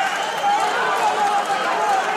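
Boxing arena crowd: a steady din of many voices shouting at once.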